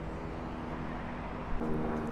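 Street traffic: a motor vehicle engine running nearby, heard as a steady low hum. About a second and a half in, a stronger steady hum comes in.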